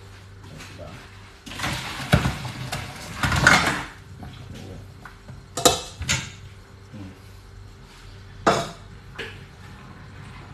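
Hot water poured from a stainless steel cooking pot into a steel sink, a splashing gush lasting about two seconds, then a few sharp metal clanks of the pot. This is the first boiling water being drained off the pork to clean it.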